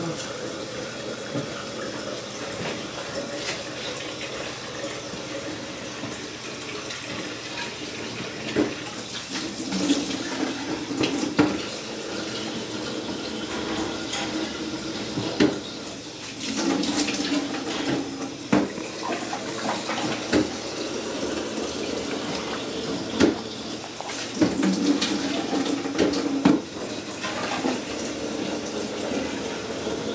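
Water running steadily from a faucet into a concrete sink. Several sharp knocks from handling plastic containers and lab ware at the counter are heard over it.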